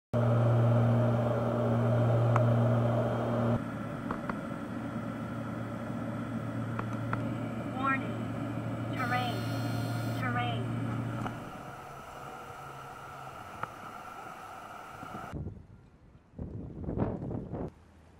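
Steady cabin drone of a twin-engine propeller aircraft in flight: a low hum with a higher overtone, loud at first and then dropping to a lower level, with brief voices over it midway. The drone cuts off suddenly near the end, followed by a few short bursts of noise.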